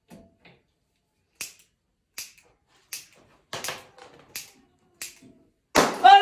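A series of short, sharp clicks and taps from handling things at a kitchen counter and stove, about eight at uneven spacing over a few seconds, the loudest near the end.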